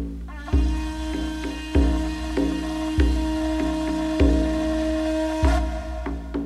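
Music: a frame drum struck with a padded beater in a steady beat, deep strokes about every 0.6 s with stronger and lighter ones alternating. Over it a conch shell is blown in one long breathy note, starting about half a second in and stopping shortly before the end.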